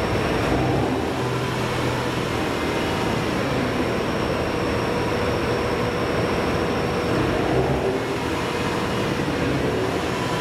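JR Hokkaido H100-series diesel-electric railcars idling at the platform: a steady engine rumble with a low hum and no sharp knocks.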